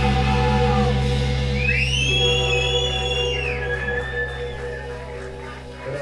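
Live indie rock band's electric guitars and bass holding a sustained, droning chord, slowly fading, with a high, gliding whine over it for a couple of seconds.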